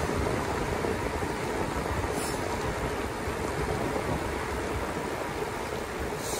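Steady rush of wind on the microphone mixed with the rumble of bicycle tyres rolling on asphalt, from an e-bike coasting fast downhill.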